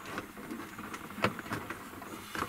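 Handling sounds as a cargo net is unhooked in the back of an SUV: light rustling with one sharp click about a second in.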